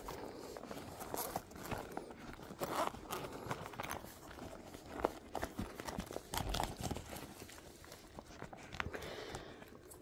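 A German Shepherd moving about and nosing into bedding: faint rustling with scattered light knocks and clicks.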